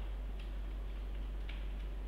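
A few faint ticks of a stylus tapping and writing on a tablet screen, over a steady low electrical hum.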